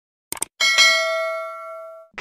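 A quick double mouse-click sound effect, then a bright notification-bell ding that rings and fades away over about a second and a half, marking the bell icon being clicked in a subscribe animation.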